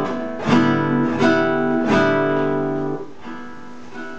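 Guitar strumming chords, three strums about two-thirds of a second apart, the last chord left ringing and fading out near the end, played into a looper pedal as it records a loop.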